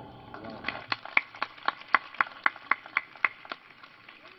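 Hand clapping in an even rhythm, about four claps a second, starting a little way in and stopping shortly before the end: applause as a speech finishes.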